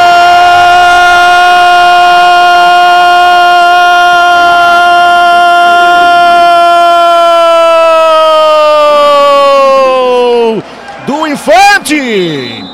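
A futsal commentator's long drawn-out goal cry, "Gooool", held on one high, loud note for about ten seconds and sagging in pitch as his breath runs out, then a few short shouted syllables near the end. The cry announces a goal just scored.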